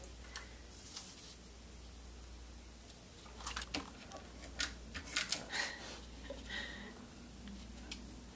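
A handheld adhesive dispenser pressed and run along a paper bow, with paper handled by hand. There are a few quiet clicks, rustles and a brief squeak in the middle, over a faint room hum.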